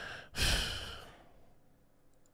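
A man sighing into a close microphone: a faint breath in, then a long exhale, strongest about half a second in and fading out over about a second.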